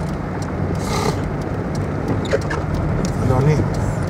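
Steady low hum of a car running at low speed, heard from inside the cabin.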